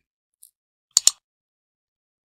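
A single click of a computer mouse button: two sharp ticks about a tenth of a second apart, about a second in, with a faint tick a little earlier.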